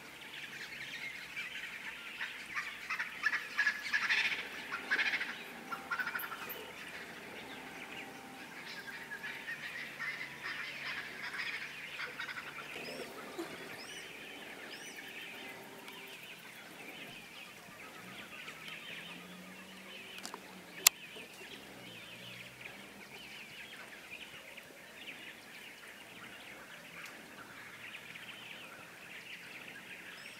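Outdoor bird calls, a busy run of calls loudest a few seconds in, then a lighter chorus of chirps. A single sharp click sounds about two-thirds of the way through.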